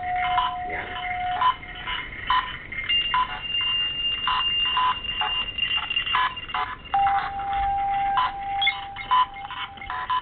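Ghost-hunting spirit-box app playing through a phone speaker: a stream of choppy, clipped sound fragments that change every fraction of a second, with long steady tones held underneath, a low one early on, a higher one in the middle and another low one near the end.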